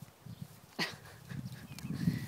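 A Texas longhorn walking through dry pasture grass with soft, irregular hoof falls. There is a single short, sharp puff of breath about a second in.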